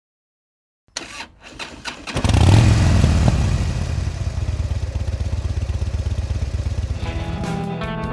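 A few sharp clicks, then a motorcycle engine catches about two seconds in and runs with a fast, even beat, loudest just after it fires and then settling. Music comes in near the end.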